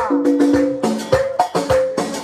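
Upbeat cumbia band music: held melody notes over a steady beat of hand percussion and shakers.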